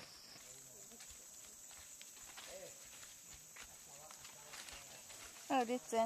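Quiet rainforest ambience with a thin, steady high-pitched tone and faint scattered voices, then a person's voice speaking in short, louder phrases from about five and a half seconds in.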